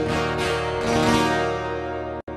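A rock band's closing chord: electric and acoustic guitars strummed a few more times in the first second, then left ringing and slowly fading.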